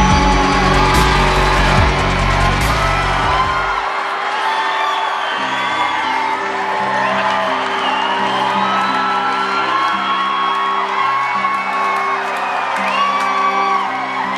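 Live arena concert music heard from the audience: a loud, bass-heavy electronic track drops out about four seconds in, leaving held synthesizer chords while the crowd whoops and cheers over them.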